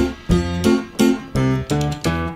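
Instrumental passage of a song: guitar strummed in a steady rhythm, about three strokes a second, over a low bass.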